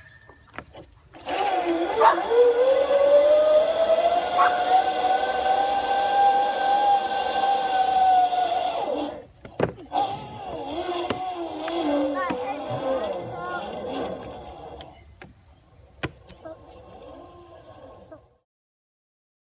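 Zip line trolley rolling down the steel cable: a long whine that rises as it picks up speed and sinks as it slows, lasting about eight seconds. A knock follows, then several seconds of voices.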